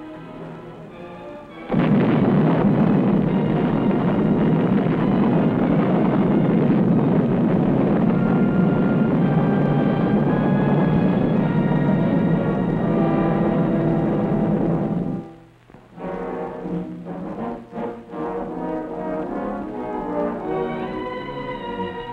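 Demolition charges blowing up a pontoon bridge span: a sudden blast about two seconds in, followed by a long, loud rumble lasting some thirteen seconds. Orchestral music with brass plays over it and carries on alone after a short break near the end of the rumble.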